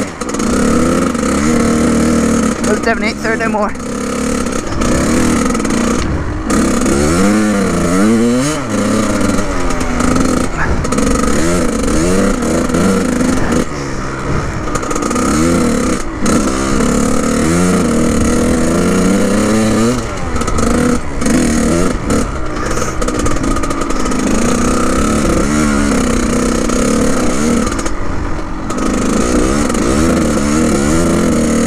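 Kawasaki KX100 two-stroke dirt bike engine being ridden hard, its pitch rising and falling every second or two as the throttle is opened and shut, with a few brief lulls.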